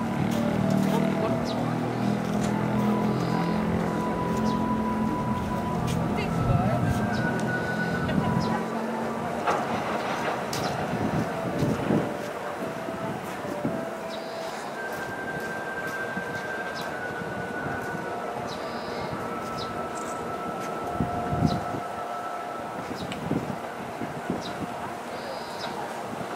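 Container freight wagons rolling past on a viaduct, their wheels clicking over rail joints amid a steady rumble, heavier in the first several seconds. Thin steady tones come and go over the noise.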